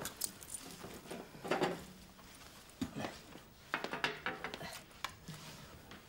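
Glass ashtrays being picked up and set down on a glass-topped coffee table: several separate clinks and knocks spread across a few seconds.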